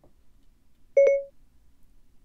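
iPhone Siri activation chime: one short beep about a second in, the signal that Siri has opened and is listening.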